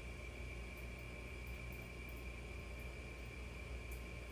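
Steady background noise: a low hum with a faint high-pitched whine and a light hiss, with no distinct events.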